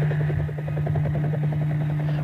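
Helicopter flying low overhead, its rotor beating in a rapid, even rhythm over a steady low drone.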